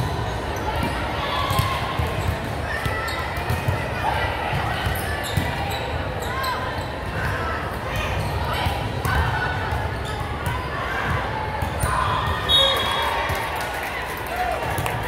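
Indoor volleyball play on a hardwood gym floor: sharp ball hits and thuds with shoe squeaks, over players and spectators calling out. There is a brief high-pitched squeal near the end.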